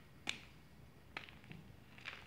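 Block of gym chalk being crumbled by hand: two crisp snaps of chalk breaking off, the louder about a third of a second in and another just past a second, with a few faint crumbling ticks after.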